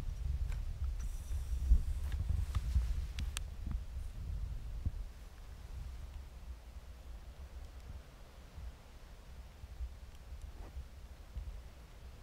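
Low, steady outdoor rumble with a few soft rustles and small clicks as a person creeps across grass, kneels and settles a rifle on shooting sticks. The rustles fade after about five seconds, leaving only the faint rumble.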